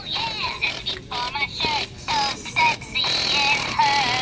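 A musical greeting card playing a recorded song with singing as it is held open.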